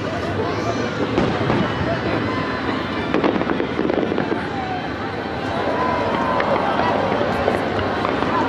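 Fireworks show: aerial shells bursting with several sharp bangs, the loudest about one and three seconds in, over the voices of a large crowd of spectators.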